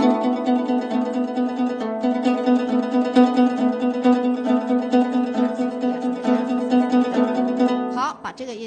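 Guzheng played in tremolo (yaozhi): fast, even, repeated plucking that sustains one steady note, with its overtones ringing above it.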